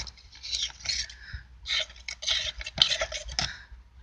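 Plastic scraper scraping spongy electroplated zinc off a copper cathode held in a dish of water, in a few uneven scratchy strokes.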